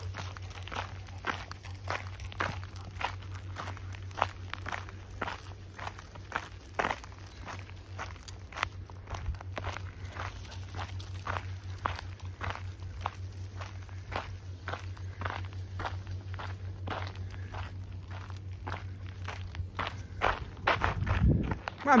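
A person's footsteps on a gravel path, walking at a steady pace of about two steps a second.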